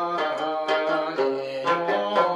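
Tibetan folk music: a plucked string instrument playing a melody of short notes that change about every half second.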